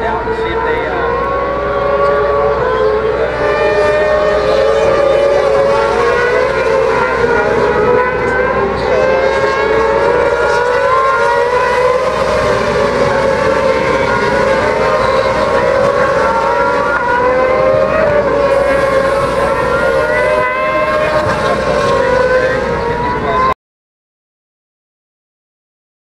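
Several race motorcycles at high revs, their engine notes overlapping and wavering up and down in pitch as they go through a corner. The sound cuts off suddenly near the end.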